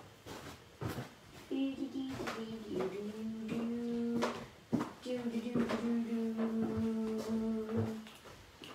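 A person humming a tune in long, steady held notes, with a few sharp knocks from things being handled.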